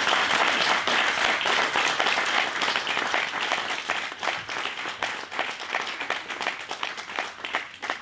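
Audience applauding: a dense patter of many hands clapping that thins out and fades over the last few seconds.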